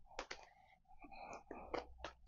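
Tarot cards being spread out by hand on a cloth-covered table: two quick sharp card clicks just after the start, then faint sliding and tapping as the cards are laid out.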